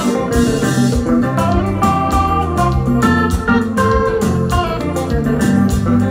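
Live kompa band playing: electric guitar over an organ-sounding keyboard, bass guitar and drums keeping a steady beat.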